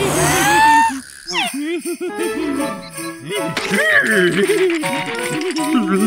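Cartoon soundtrack: a jingling-bell music cue under wordless, wobbling cartoon character vocalizations, opening with a rising yell in the first second.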